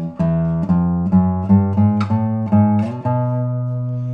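A 2023 Robin Moyes classical guitar with a spruce top and radial bracing, played in the bass register: about seven plucked notes, roughly two a second, then a final low note left ringing from about three seconds in.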